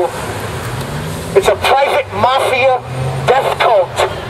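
A man shouting through a megaphone, starting about a second and a half in, his amplified voice thin and lacking bass. Under it, a passing vehicle's engine hums in street traffic.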